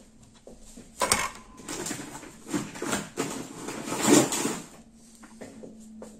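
Handling noise from the thick chenille yarn hat being moved and picked up on the table: a series of irregular rustles and soft bumps, the loudest about four seconds in.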